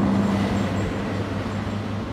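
Steady low hum of a motor vehicle engine with road noise, easing slowly in level.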